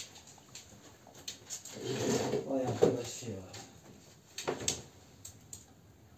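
Someone moving about and handling things at a wood stove: small taps and clicks, a low mumbling voice in the middle, and a single knock about four and a half seconds in.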